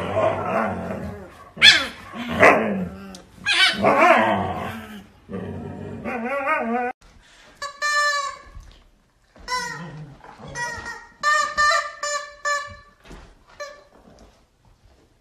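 Husky dogs vocalizing: a loud, dense run of yelps and howl-like cries over the first half, then, after a short gap, a string of short high-pitched yelps and whines.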